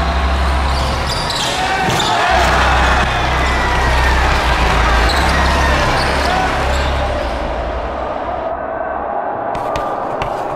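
A basketball dribbling on a gym's hardwood floor amid indoor game noise and voices, under a music track with deep bass notes. The bass stops about eight seconds in, and the sound thins out near the end.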